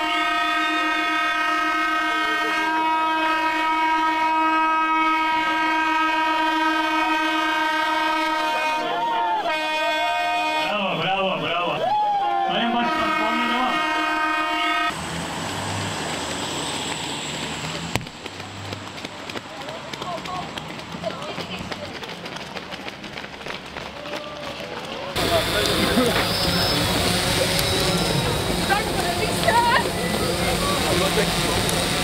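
A start horn gives one long, steady blast of about fifteen seconds, wavering briefly past the middle, as the race begins. It is followed by an even hiss of rain and crowd noise, which grows louder near the end.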